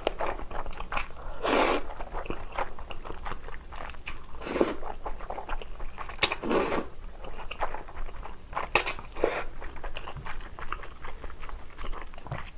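Close-miked chewing of spicy soupy tteokbokki: soft, wet chewing and mouth sounds, with a few short louder noisy sounds spread through.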